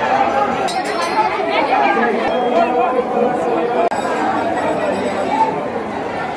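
Many people talking at once: the steady chatter of a crowd of devotees in a busy temple.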